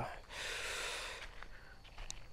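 A man's breath drawn in between sentences, one breathy inhale of about a second close to the microphone, then faint background.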